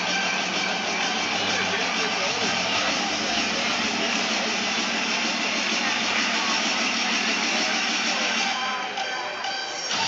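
Steady hubbub of many voices in an ice hockey arena, with music playing over the arena's speakers.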